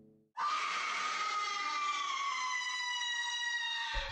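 A woman's long, high-pitched scream that starts a moment in, is held for about three and a half seconds and slowly falls in pitch.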